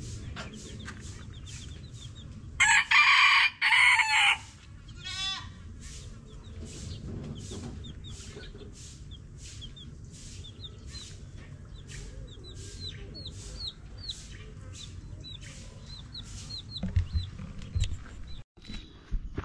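A rooster crows loudly once, about three seconds in, a call of under two seconds with a short break in it. Chicks peep in short, high, down-sliding cheeps, more often in the second half.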